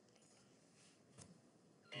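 Near silence: room tone, with one faint click a little over a second in.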